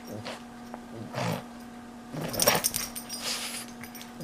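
A pug making short, breathy noises in four or five irregular bursts as he bites and shakes a plush toy, over a faint steady hum.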